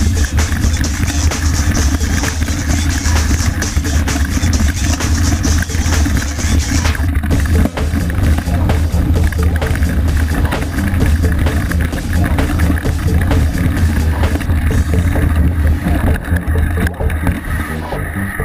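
Wind buffeting and rumble on a bike-mounted action camera, with constant rattle and knocks from the mountain bike rolling fast over a rough, rocky dirt trail. Music plays over it.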